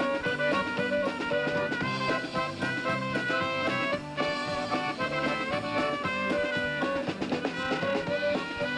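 A live Czech-style old-time dance band (trumpet, concertina, drums and bass) playing a lively instrumental dance tune, with a short break about halfway.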